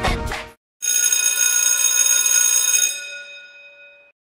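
An electric bell ringing for about two seconds, then fading out. Before it, a chanted cheer song with music cuts off in the first half second.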